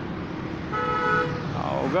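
A vehicle horn gives one short toot, about half a second long, near the middle, over a low steady rumble.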